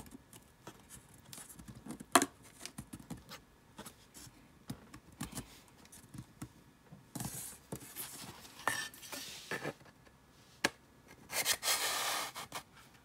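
A thin hardboard chalkboard panel rubbing and scraping in the slot of a wooden stand as it is worked in, with scattered light knocks and one sharp knock about two seconds in. The panel does not yet go in fully.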